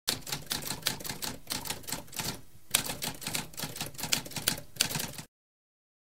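Typewriter typing: a quick run of sharp keystrokes with a short pause about halfway, stopping shortly before the end.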